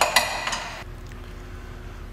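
Socket ratchet on the crankshaft bolt clicking in a short metallic burst of under a second near the start, as the engine is turned over by hand.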